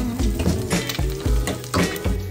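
An egg and sausages sizzling as they fry in a frying pan, over background pop music with a steady beat.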